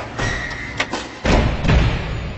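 Cinematic logo-reveal sound effects: a sharp click just before a second in, then two heavy low thuds, the louder near the end, ringing on in a long reverberant tail.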